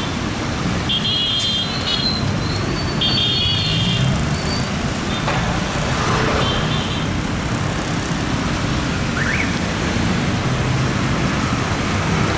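Street traffic with motorcycles and taxis passing, a steady engine rumble throughout. A few brief high-pitched tones sound in the first seven seconds, and a short rising one about nine seconds in.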